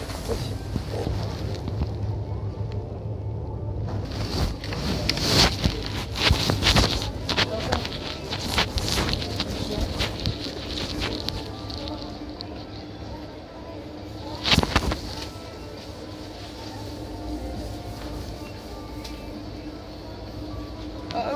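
Muffled rustling and knocks of a phone recording from inside a pocket or bag, over shop background noise with music and faint voices. One sharper knock comes about fifteen seconds in.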